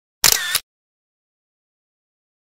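A brief click-like transition sound effect with a sharp start, lasting under half a second, about a quarter of a second in, followed by silence.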